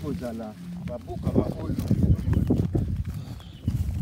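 Footsteps and rustling through dense undergrowth, with irregular knocks of a handheld camera being moved, after a few words at the very start.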